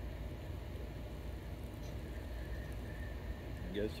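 Steady low rumble of room noise in a large hall with ventilation running, without distinct knocks or rubbing; a man's voice says a word right at the end.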